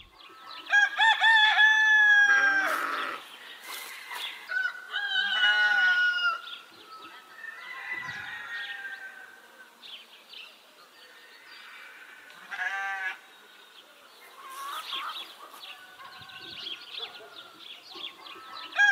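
Roosters crowing, one long crow after another. The first two, about a second and five seconds in, are the loudest, and fainter crows follow from further off.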